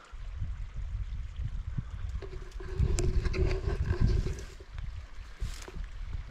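Wind buffeting the body-worn microphone, a low, uneven rumble, with scattered rustles and knocks from moving through brush. A faint steady hum comes in about two seconds in and lasts about two seconds.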